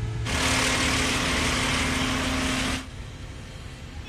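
Construction machinery running: a loud steady hiss over a low steady hum that cuts in abruptly just after the start and drops away sharply a little under three seconds in, leaving a quieter hum.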